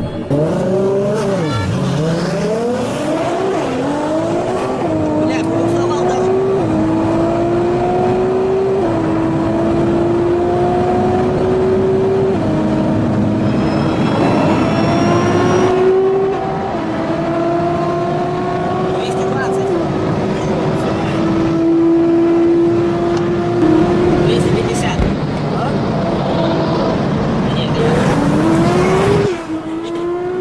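A sports car's engine under hard acceleration, its pitch climbing and dropping back at each of a series of upshifts, then another fast run-up near the end.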